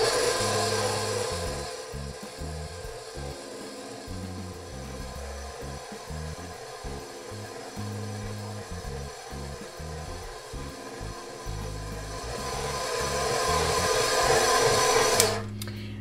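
KitchenAid stand mixer running on low speed, its dough hook kneading a stiff bread dough. The motor hum is loud at first, fades under background music with a stepping bass line, swells again and cuts off near the end.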